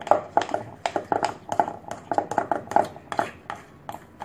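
A utensil stirring wet bread dough in a glass mixing bowl, knocking and scraping against the glass in a steady rhythm of about three to four strokes a second.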